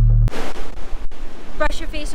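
Electronic music cuts off abruptly just after the start. A steady rushing noise of wind and breaking surf on a beach follows, and a woman's voice starts speaking near the end.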